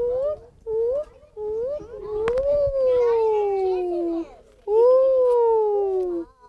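A human voice imitating an owl's "to-wit to-woo": a few short rising hoots, then two long hoots that slide slowly down in pitch.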